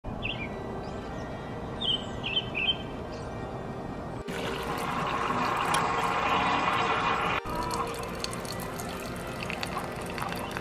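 A few short bird chirps, then, at a hard cut about four seconds in, water pouring from a pitcher into a paper cup, a louder rushing sound lasting about three seconds. After another cut it gives way to a quieter thin stream of coffee running from a coffee machine into a mug.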